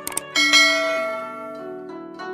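A quick double mouse click, then a bright bell chime that rings out about a third of a second in and fades over about a second and a half: the sound effect of an animated subscribe-and-bell button. Plucked, zither-like background music plays underneath.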